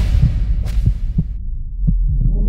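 Hip-hop beat with the vocal dropped out, stripped down to a deep sustained 808 bass and a few low kick-drum hits. The highs are filtered away over the first second and a half, then open back up near the end.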